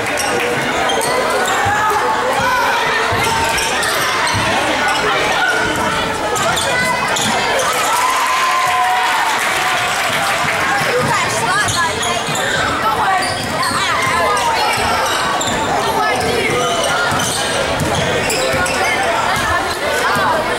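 Basketball dribbling and bouncing on a hardwood gym court during live play, with players and spectators shouting and talking, echoing in the gymnasium.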